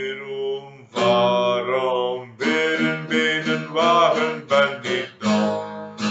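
A man singing over a strummed acoustic guitar, in phrases that break off briefly about a second in and again near the middle.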